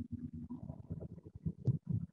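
Low, uneven rumbling noise from a video call's microphone, with a few faint clicks.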